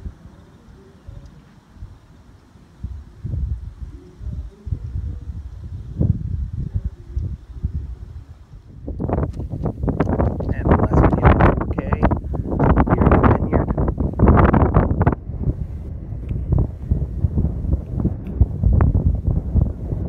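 Wind buffeting a phone's built-in microphone: a low, gusty rumble that turns into loud, heavy buffeting about nine seconds in.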